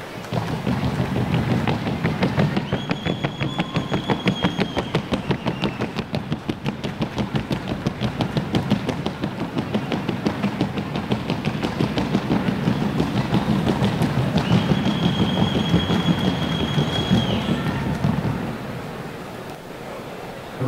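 Fast, even clatter of a Colombian trocha horse's hoofbeats, rapid clicks running on without a break over a low rumble of the arena. A held high tone sounds twice, for about three seconds each, roughly three seconds in and again about fourteen seconds in.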